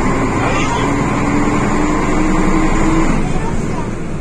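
Karosa ŠL 11 bus's diesel engine heard from inside the bus, running under load with a steady hum that climbs slowly in pitch, then drops about three seconds in as the gear is changed.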